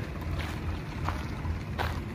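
Wind rumbling on the microphone, with three footsteps at walking pace about two-thirds of a second apart.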